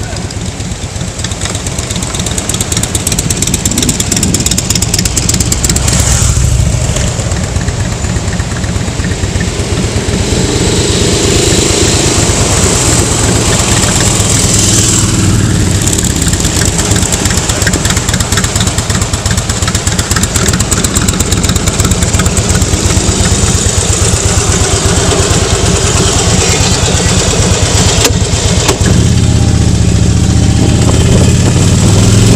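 Harley-Davidson touring motorcycle's V-twin engine running under way, heard with heavy wind rush on the bike-mounted microphone. The sound grows louder over the first few seconds as the bike gets moving, then holds steady.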